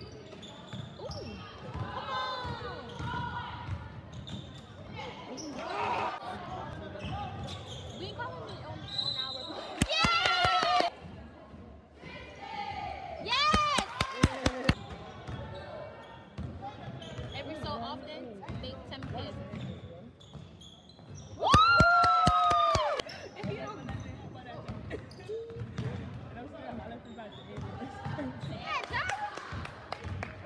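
Basketball game in a gym: a ball bouncing on the hardwood court, with echoing voices from spectators and players. Several loud held cries come through, the loudest about two-thirds of the way in.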